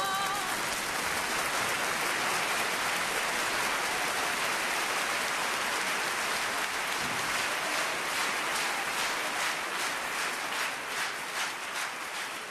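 Audience applauding in a concert hall as a song ends. The last sung note cuts off at the start. The applause is dense at first and thins into separate claps near the end.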